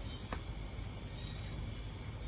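Crickets chirping in a steady high-pitched trill at night, with a faint click about a third of a second in.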